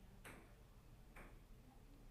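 Near silence: room tone with two faint clicks about a second apart.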